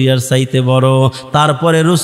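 A man preaching in a drawn-out, sing-song chanting tone, holding each phrase on a level note with short breaks between phrases.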